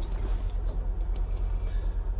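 Semi-truck's diesel engine idling: a steady low rumble with a quick, even pulse, heard inside the sleeper cab.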